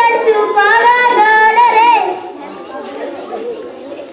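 A boy singing unaccompanied into a microphone, holding long gliding notes; his song stops about halfway through, leaving faint background chatter.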